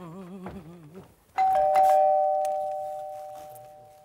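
Two-tone ding-dong doorbell chime, a higher note then a lower one, ringing out and fading away over a couple of seconds.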